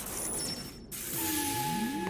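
Cartoon energy-transfer sound effect: a high hiss that cuts off suddenly a little under a second in, then a rushing noise with a steady tone and a whine that rises in pitch, as power passes from one hand to the other.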